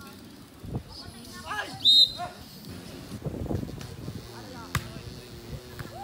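A volleyball struck by hand during a rally: sharp slaps about a second in and again near five seconds. A loud shout cuts in around two seconds, with other voices in the background.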